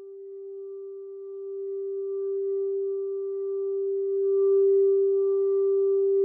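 Background music: a single held, pure-sounding tone with faint higher overtones that swells slowly louder.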